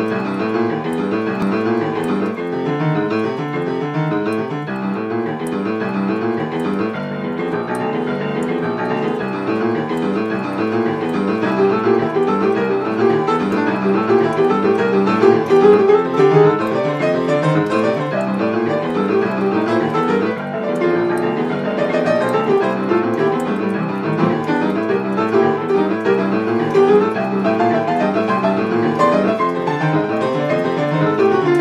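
Boogie-woogie piano: a rolling eight-to-the-bar left-hand bass line, with the second finger crossing over to the flat seventh, and right-hand chords and riffs added partway through.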